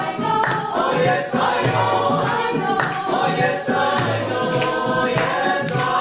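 A choir singing a song with accompaniment, many voices together over a steady low beat.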